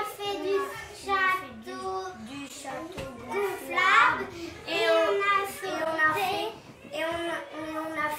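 Children singing, with held notes and a rising phrase about halfway through.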